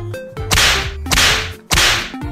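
Three loud bursts of hissing noise, each about half a second long and starting suddenly, one after another, over a quieter music track with a low beat.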